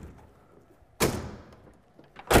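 Hard-folding tonneau cover's rear panel dropping shut onto the truck bed rail about a second in: a single sharp thud that dies away over about half a second, the panel's weight engaging the rail latch.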